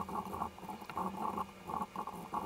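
Typing on a computer keyboard: a rapid, uneven run of light key clicks as a sentence is entered.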